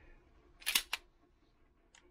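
Two sharp metallic clicks close together, about three-quarters of a second in, from handling a Beretta 92 pistol.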